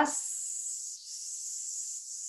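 A woman's long, drawn-out 'sss' hiss, the stretched 's' of 'здравствуйте' in a breath-control exercise. It is the exhale on the 's' that the exercise trains, which should be as long and even as possible. The hiss is high and airy, with a brief dip in level about a second in.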